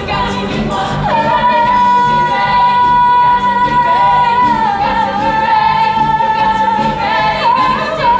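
A female lead singer holds one long, high note for about six seconds over live musical accompaniment in a stage musical song.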